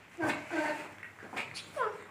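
A small child's short, high-pitched vocal sounds: about four brief calls, the last one falling in pitch near the end.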